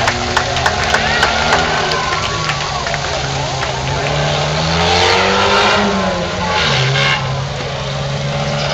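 Small off-road truck's engine running at low speed as it drives slowly over the dirt, revving up and back down about five seconds in.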